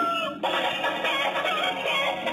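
Electronic chicken carousel toy playing recorded sounds from its sound chip: a long rooster crow ends about half a second in, and a busy electronic tune starts straight after.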